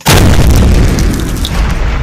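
A loud, deep boom sound effect that hits all at once and dies away over about two seconds.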